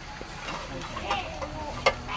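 Metal tongs scraping and clicking on a charcoal grill as food is turned, with one sharp click near the end.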